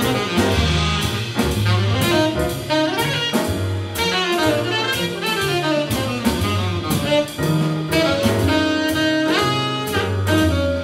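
Live jazz ensemble playing a blues: saxophones and brass over piano, double bass and drum kit with cymbals. Near the end one horn slides up in pitch.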